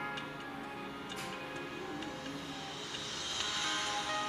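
Background instrumental music with short chiming notes, and a hissy swell that builds near the end.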